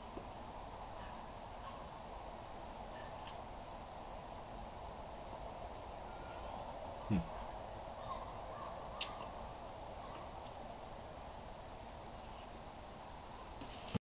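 Quiet room ambience with a steady faint hiss, broken by one brief low sound that falls in pitch about seven seconds in and a single sharp click about two seconds later.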